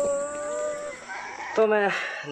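A rooster crowing: one long call that rises and then holds its pitch for about a second. A man's voice starts near the end.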